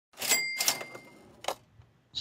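Cash-register 'ka-ching' sound effect: a bright bell ding over a mechanical clatter that fades out, then a single short click about a second and a half in.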